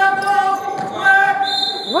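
A referee's whistle blown in long, steady blasts to stop play.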